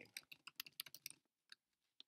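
Computer keyboard being typed on: a quick run of faint key clicks over the first second or so, then a few scattered clicks.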